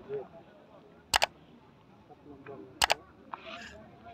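Two crisp double clicks, each a quick pair, about a second and a half apart: computer mouse-click sound effects, followed by a soft swish near the end.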